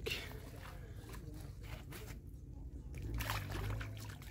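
Pond water sloshing and splashing around hands as a caught fish is lowered in and released, in two stretches, the second near the end.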